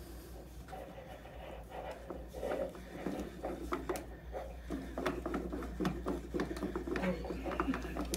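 Faint rustling, rubbing and scattered small clicks of a hand feeling around inside a cardboard gift box, with soft indistinct voices now and then.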